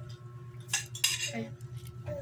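Cutlery clinking against a plate of noodles: two sharp clinks close together about a second in.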